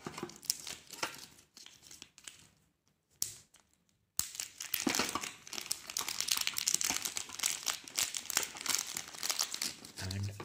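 Polythene wrap crinkling as it is pulled off a smartphone: crackly rustling, a brief lull a couple of seconds in, then steady crinkling from about four seconds on.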